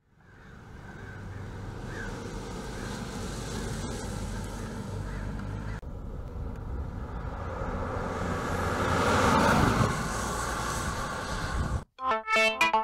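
Hyundai Elantra GT hatchback driving past, with engine and tyre noise that swells to a peak about three quarters of the way through as the car passes close, then falls away. The sound breaks off briefly near the middle.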